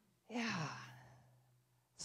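A single breathy, sighing "yeah" that falls in pitch and fades away over about a second, over a steady low hum.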